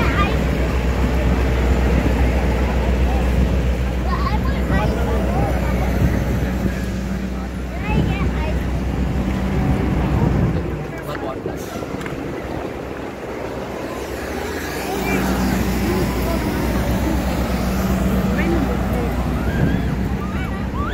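Busy city street: traffic going past, wind on the microphone and the voices of passers-by. The low rumble eases for a few seconds just after halfway, then comes back.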